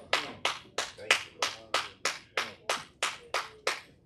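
Hand clapping in a steady rhythmic beat, about three claps a second, stopping just before the end.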